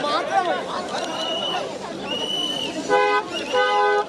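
A car horn honks twice in short blasts near the end, over the chatter and shouts of a crowd pressed around the car. Two higher held tones sound earlier.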